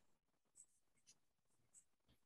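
Faint scratching of a pen drawing on paper, a few short strokes, over near silence.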